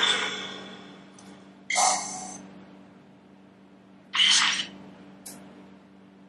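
Necrophonic ghost-box app playing through a phone speaker: short bursts of scratchy noise with echoing tails, about two seconds apart, and a brief click near the end, over a low steady hum.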